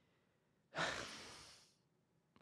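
A man's sigh: one long breath out, starting about three quarters of a second in and fading away.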